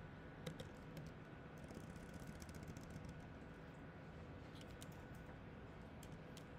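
Faint computer keyboard and mouse clicks in a few short clusters: about half a second in, around two seconds in and near five seconds, over a faint steady hum.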